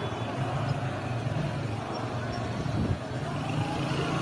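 Steady street noise from a phone-filmed street clip: engines running with a low rumble under a constant background wash.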